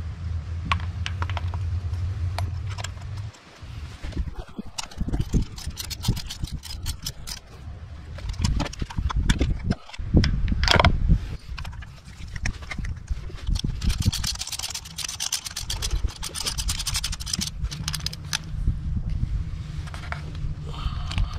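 Hand tools working spark plugs into an engine's plug wells: a spark plug socket and extension knock and click in the wells, then a 3/8-inch drive ratchet clicks rapidly for a few seconds near the end while a new plug is run in. A steady low hum is there for about the first three seconds.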